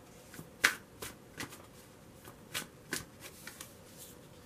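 A tarot deck being shuffled by hand: a string of short, sharp card snaps at uneven intervals, the loudest about two-thirds of a second in.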